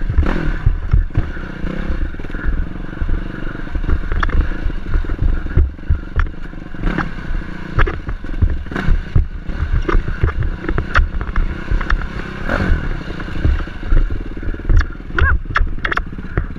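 Dirt bike engine running as the bike rides over a rough rocky trail, with frequent sharp knocks and clatter from the rocks.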